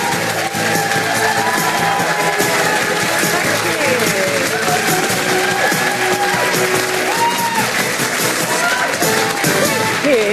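Studio audience applauding over loud music.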